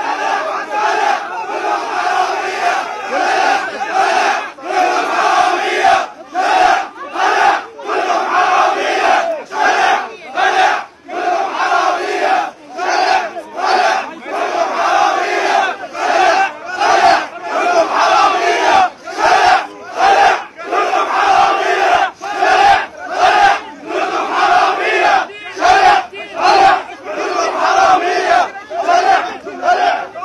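A large crowd of men shouting in protest, the shouts falling into a regular chant-like rhythm of a little more than one a second.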